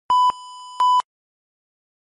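Electronic beep tone: a loud beep, a quieter held tone, then a second loud beep, cutting off suddenly about a second in.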